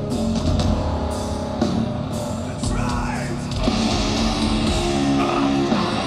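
Live heavy metal band through a festival PA: distorted electric guitars, bass and drum kit playing continuously, with the cymbals coming in heavier a little past halfway.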